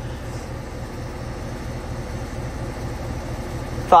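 Outdoor unit of a 2022 Ruud 5-ton heat pump running in defrost mode: a steady low hum.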